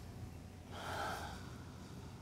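A single audible breath from a person, a short airy exhale just under a second long, starting a little under a second in, over faint room hum.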